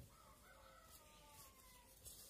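A rooster crowing faintly: one long call that rises a little at first, then slides down in pitch and stops just before the end.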